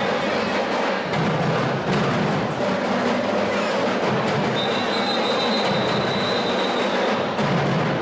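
Carnival parade music dominated by rhythmic drumming and percussion, with a long high note held about halfway through.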